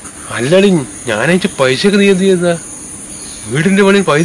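A man talking in two stretches, with a pause in the middle, over a steady high-pitched chirring of insects such as crickets.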